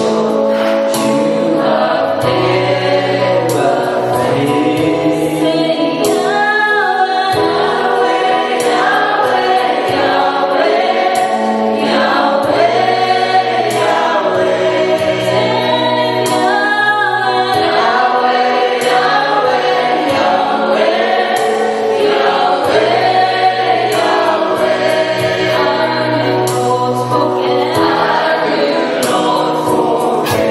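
Live gospel worship song sung by a group of singers into microphones, with instrumental accompaniment and a steady beat.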